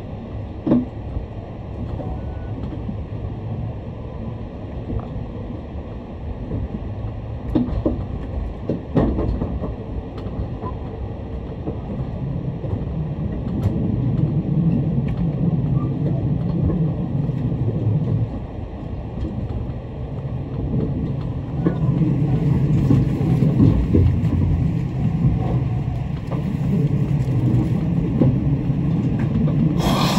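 Cabin sound of an E751 series electric limited express train in motion: a steady low rumble of wheels on rails, with a few sharp clicks in the first ten seconds, growing louder in the second half.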